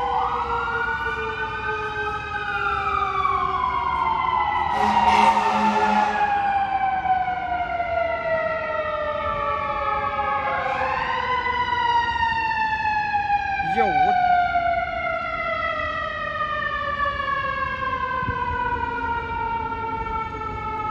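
Emergency vehicle siren that climbs in pitch and then falls slowly over several seconds, twice: once about two seconds in and again about ten seconds in. A short hiss breaks in around five seconds.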